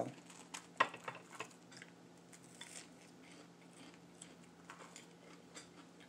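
A few light clicks and taps of a utensil against a ceramic plate in the first second and a half, then quiet with only faint small ticks and a low steady hum.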